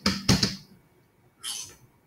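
A small Moorebot Scout robot is pushed onto its plastic charging dock, giving a click and a short knock near the start. About a second and a half in, the robot gives a brief high sound on meeting the dock, the cue that it has docked to charge.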